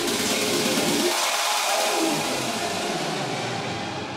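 Electronic dance music played by a DJ through a festival main-stage sound system. The bass drops out about a second in, and a low tone glides downward. Near the end the highs fade and the music grows quieter.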